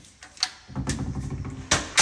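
Hinged door between the garage and the house being handled and pulled shut: a few light clicks, a low rubbing rumble, then two sharp thumps near the end, the loudest sounds here.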